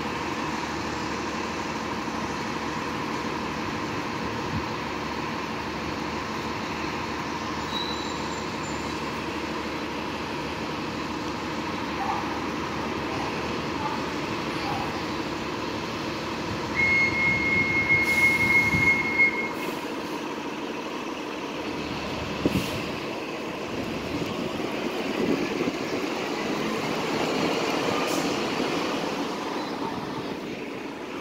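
City transit bus diesel engines running at a bus terminal, a steady drone. A bit past halfway a loud, high, steady squeal lasts about three seconds. Near the end the engine noise swells as a bus pulls away.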